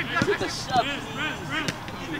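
Voices shouting during a soccer match, with a short sharp knock near the end from the ball being kicked.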